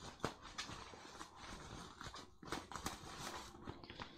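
Faint rustling and crinkling of plastic bubble wrap and foil packing being pulled apart by hand, with scattered small clicks.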